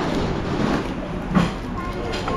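Steady restaurant din with faint background voices, and a single sharp knock about one and a half seconds in.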